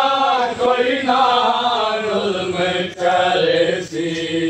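Men chanting a noha, a Muharram lament, together in long drawn-out sung lines, with brief breaks for breath about three seconds in and just before the end.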